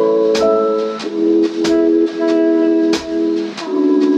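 Instrumental background music: held chords with a drum hit about every second and a quarter.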